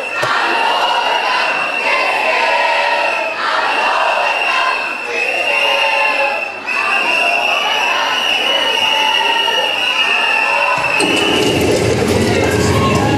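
A large group of teenagers shouting and cheering together, many voices overlapping at once. A deeper, fuller sound joins in about a second before the end.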